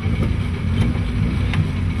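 Rally car engine running, a fairly steady low rumble.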